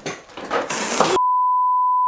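A rough, hissy burst of noise swells for about a second, then cuts to a steady one-tone censor bleep that holds to the end.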